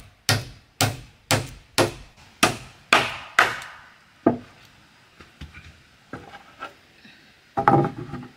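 Hammer driving a nail into a thick wooden plank, about two blows a second for the first three and a half seconds, then one last blow. Faint light knocks follow, and wooden boards knock together near the end as a plank is set in place.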